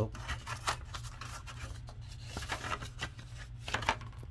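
A paper envelope being handled and opened: irregular rustling and scraping of paper, with a steady low hum underneath.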